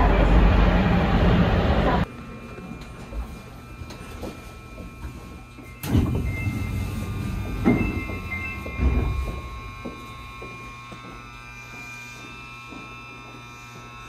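Running noise inside a rubber-tyred Sapporo Municipal Subway car, cutting off abruptly about two seconds in. A quieter, steady hum follows from the train standing with its doors open, with a few sharp knocks between about six and nine seconds in.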